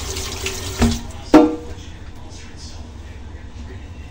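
Kitchen tap running into the sink as hands are washed, stopping about a second in. Just after, a sharp knock with a brief ring, the loudest sound here.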